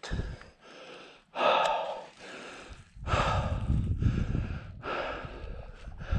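A person breathing hard: a string of heavy breaths, each about half a second to a second long, with a low rumble on the microphone joining about halfway through.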